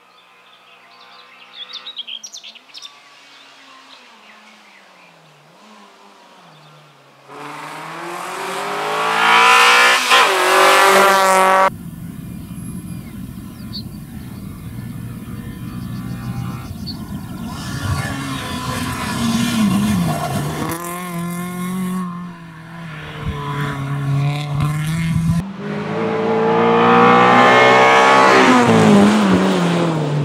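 Fiat Seicento rally car's engine at full throttle, rising in pitch with gear changes, faint at first and then loud, with abrupt jumps in loudness and pitch several times. Birds chirp faintly near the start.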